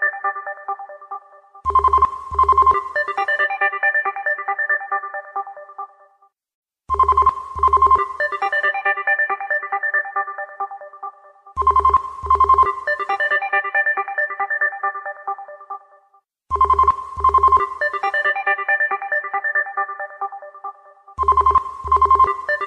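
A musical phone ringtone looping, each phrase opening with two low thuds and a chiming melody that fades away, repeating about every five seconds.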